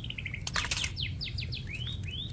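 A small bird chirping repeatedly, in quick runs of short falling chirps and arched whistled notes. A few sharp clicks come about a quarter of the way in.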